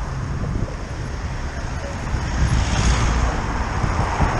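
Traffic on a wet road heard from a moving bicycle, with wind rumbling on the microphone throughout. A hiss of tyres on the wet surface swells in the second half as a car comes by.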